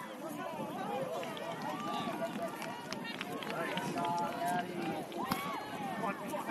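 Several voices calling and shouting over one another during soccer play, as from players and people on the sideline, with one long held call about four seconds in.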